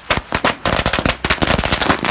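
A string of firecrackers going off on the road: a rapid, irregular run of sharp bangs, many a second, with no let-up.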